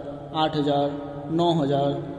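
Speech only: a man talking in Hindi.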